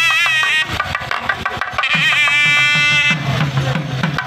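Tamil temple procession music: a thavil barrel drum beaten in a quick, busy rhythm under a wind instrument playing a wavering, ornamented melody. The melody sounds at the very start and again in a phrase of about a second in the middle, with drumming alone between.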